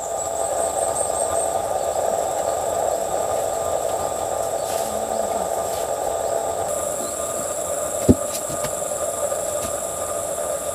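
A steady hum with a thin, constant high whine above it, and a single short knock about eight seconds in.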